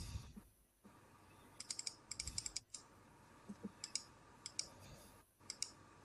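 Faint clicking and typing on a computer keyboard, in a few short runs of quick clicks.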